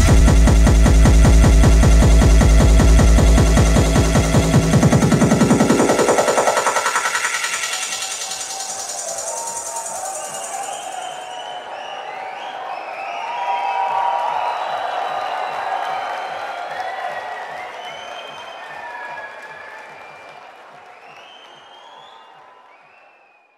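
Techno track with a steady pounding kick drum fades out about six seconds in, giving way to a large crowd cheering, which swells near the middle and then dies away.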